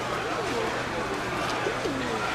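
Many domestic pigeons cooing at once, their overlapping rising and falling coos running on without a break.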